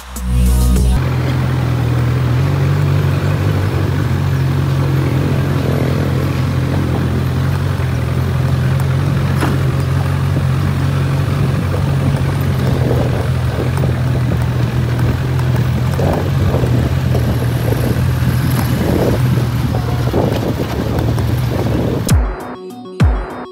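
Honda CB1000R's inline-four engine running at a steady pace under way, with wind rush on the microphone, under background music.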